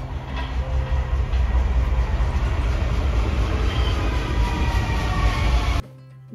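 Vienna U-Bahn metro train on the track at an elevated station: a loud, steady rumble of wheels on rails with a faint whine that falls slightly in pitch. It cuts off suddenly near the end.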